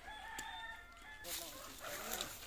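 A rooster crowing: one long, level-pitched call held for about a second, then trailing off.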